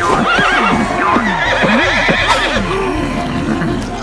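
Cartoon horse whinnying, with several rising and falling calls overlapping throughout.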